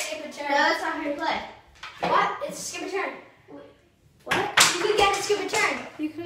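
Children's voices talking, with a brief pause about two thirds of the way through, followed by a few sharp clicks or claps among the voices.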